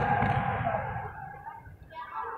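Judo spectators' long drawn-out shout trailing off over the first second and a half, over low thuds of the fighters' feet on the mats.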